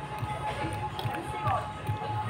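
Restaurant background: music playing with the faint voices of other diners.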